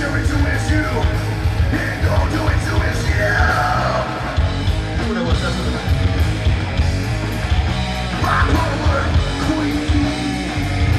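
A rock band playing live: electric guitar, bass guitar and drum kit, loud and steady, with the singer's voice coming in over them about two seconds in and again near the end.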